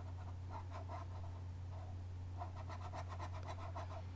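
Stylus scribbling back and forth on a drawing tablet, quick repeated strokes at about six a second, as a histogram bar is shaded in. The strokes come in two bursts, with a steady low hum underneath.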